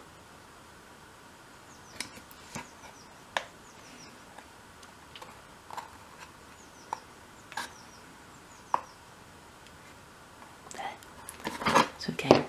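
Scattered faint clicks and taps of pliers and a small hinge pin against the wooden top of a miniature wardrobe door while feeling for the pin hole, with a louder burst of handling noise near the end.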